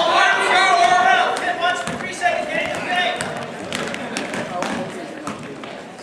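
A basketball being dribbled on an indoor court, short sharp bounces, while voices of players and spectators call out, loudest in the first second and fading after.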